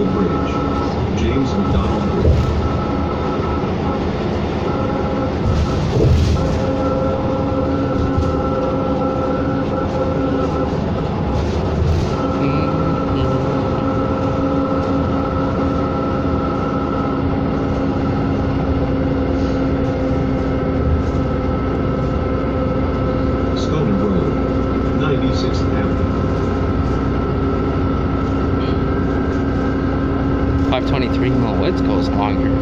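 Cabin of a 2007 New Flyer D40LFR diesel city bus on the move: steady engine and drivetrain drone with a held whine over road rumble. There are a few light rattles and knocks.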